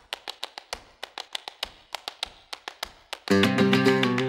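Flamenco guitar in bulerías rhythm: a quick, quiet run of dry taps, about six a second, then near the end loud ringing chords and thumb strokes of the alzapúa technique come in.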